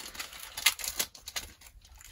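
Foil Pokémon booster pack wrapper being handled: light crinkling and crackling with a few sharp clicks, the loudest about two-thirds of a second in and another at about one second.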